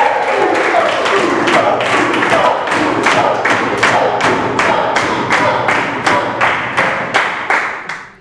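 A classroom group clapping together in a steady rhythm, about three claps a second, with voices whooping and cheering over it. The clapping fades near the end.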